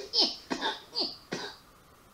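Four short, breathy bursts from a person's voice, about 0.4 s apart, each falling in pitch.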